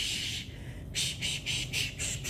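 A healer's rapid hissed 'sh' sounds, part of a whispered limpia cleansing chant: one long hiss at the start, then short hisses about five a second.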